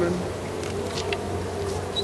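A steady, low buzzing hum, with a few faint clicks about a second in.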